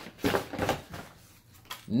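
Cardboard box and packing inserts scraping and rustling as a rifle is pulled out of them, a few short handling noises in the first second.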